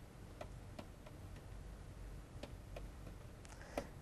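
Faint, irregular ticks of a stylus tapping on a pen-tablet screen while handwriting, about half a dozen clicks over a low steady hum.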